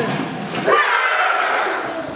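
A group of children shouting and squealing at once, a burst of overlapping voices that starts about half a second in and lasts about a second.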